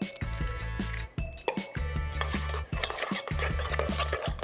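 Metal spoon clinking and scraping against an aluminium saucepan as an egg is beaten into a thick flour-and-butter dough, heard as repeated short knocks over background music with held bass notes.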